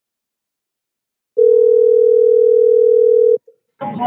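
Telephone ringback tone of an outgoing call: a single steady two-second ring about a second and a half in, after which the call is answered and a voice comes on the line near the end.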